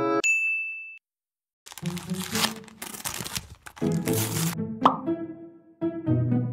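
A single bright ding, then a short silence, then dramatic background music with noisy crashing hits. A short rising plop sound effect comes near the end.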